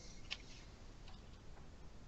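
Almost quiet: the faint hiss of a call line with a few faint, short clicks, the clearest about a third of a second in.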